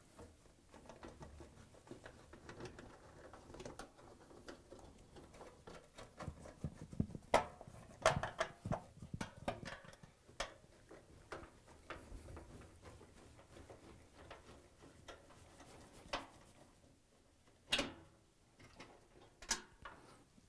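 Hand-held Torx T20 screwdriver backing screws out of a washer's sheet-metal rear panel: faint scraping and rustling with scattered light clicks and metallic taps, busiest around the middle and again near the end.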